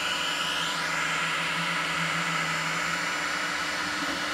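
Anycubic 3D printer running mid-print: a steady mechanical whir with a few held tones from its fans and motors as the print head moves. A higher tone drops out about a second in.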